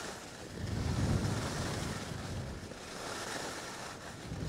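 Wind rushing over the microphone of a moving skier, with skis hissing over slushy spring snow; a gust of low buffeting rumble swells about a second in.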